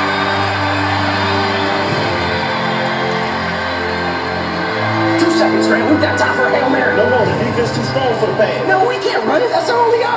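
Film soundtrack music with long held notes, played over a hall's speakers. From about halfway, crowd voices shouting rise over the music and grow louder.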